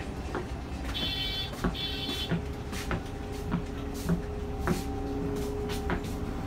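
Inside a running coach bus: a steady low engine rumble with scattered rattles and clicks from the cabin fittings, and two short high beeps about one and two seconds in.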